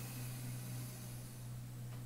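Steady low hum with a faint, even hiss, and no distinct sounds.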